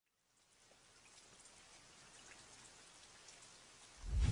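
Near silence, with a faint, even hiss slowly fading in from about a third of a second in.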